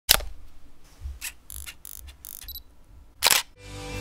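Camera sounds: a sharp click, a run of short mechanical clicks, a brief high autofocus-style beep about two and a half seconds in, then a loud shutter release a little after three seconds. Music starts to fade in near the end.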